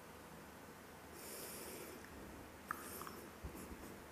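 A quiet pause before the recitation: a faint hissing breath drawn in at the microphone for under a second, about a second in, then a softer breath with a small click and a few soft knocks near the end.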